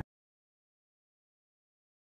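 Silence: the sound track is blank, with no sound at all.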